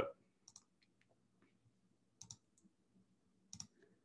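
Near silence broken by three brief faint clicks, spread over a few seconds.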